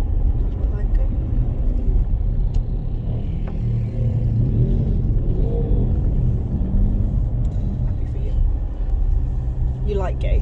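Steady low rumble of a Land Rover Freelander 2 driving slowly over a rough dirt track, engine and tyre noise heard from inside the cabin. Around the middle, a small motorbike's engine note rises and falls briefly as it passes close by.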